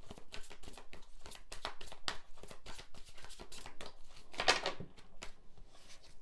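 Tarot cards being hand-shuffled overhand: a quick, continuous run of soft card taps and slides, with one louder swish of cards about four and a half seconds in.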